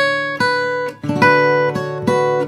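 Steel-string acoustic guitar played fingerstyle: three chords struck, at the start, about half a second in and just past a second, each left to ring.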